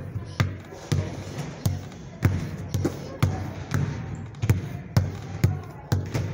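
A basketball being dribbled hard on a hard floor in a repeated crossover drill, with a sharp bounce about twice a second at a slightly uneven pace.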